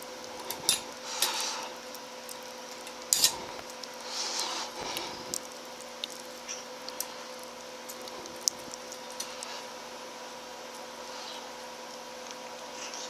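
Small metal clicks, taps and rustles of a wire being fished and looped around the terminal of a metal lamp socket by hand. The clicks come scattered and irregular, the loudest near the start and about three seconds in.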